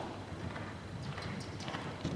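Hoofbeats of a horse cantering on the soft sand footing of an indoor arena: an uneven run of low, dull thuds with a few sharper clicks.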